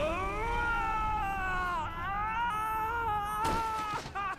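An anime character's long, high scream of pain after a whip-like open-hand slap to the back. The scream is held, breaks off briefly near the middle, then goes on, with a sharp crack near the end.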